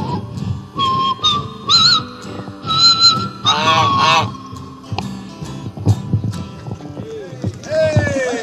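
A goose honking repeatedly over live jam-session music. There is a run of short calls in the first half, ending in a longer, harsher call about three and a half seconds in.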